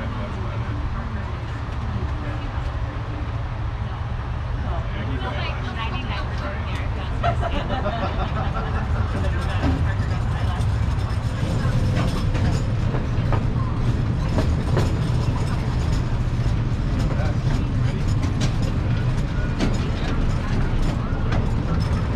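Small park ride train under way with passengers aboard: a steady low rumble from the train and its wheels, with frequent short clicks from the track. It gets a little louder from about seven seconds in as the train picks up speed.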